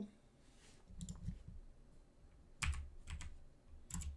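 A few keystrokes on a computer keyboard: short clicks in small clusters about a second in, near three seconds and again near the end.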